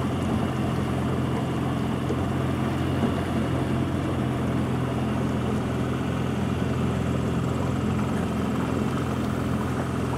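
A small boat's motor runs steadily at low speed with a low, even hum, over the rush of water through shallow rapids.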